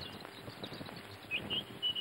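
Faint bird chirps: short high calls in the second half, over quiet outdoor ambience.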